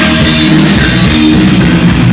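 Heavy metal band playing live and loud: distorted electric guitar and bass riffing over a drum kit with cymbals.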